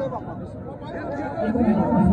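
Crowd chatter: several men's voices talking over one another, quieter early on and growing louder toward the end.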